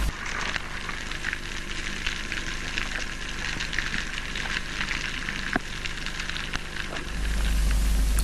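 Underwater ambience at a rocky reef: a dense crackling of many tiny clicks over a steady low hum, with a low rumble swelling near the end.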